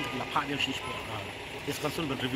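A man speaking Khasi in short, broken phrases, over a steady low hum of street traffic.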